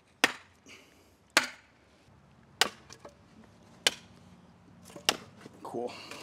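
Sledgehammer driving a wooden stake into the ground: five heavy blows, evenly spaced about a second and a quarter apart.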